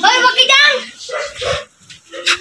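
A voice calls out, then a dog gives a few short barks about a second in.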